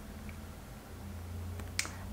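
Quiet room with a faint low hum, and one sharp click near the end.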